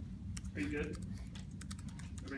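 Typing on a laptop keyboard: quick, irregular keystrokes clicking throughout, with a faint voice murmuring underneath about half a second in.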